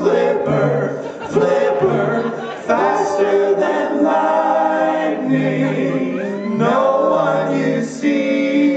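Male a cappella vocal group singing in close four-part harmony through microphones and a PA, with sustained chords changing every second or so and no instruments.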